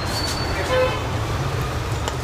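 Steady rumble of road traffic from the street, with a short vehicle horn toot a little under a second in.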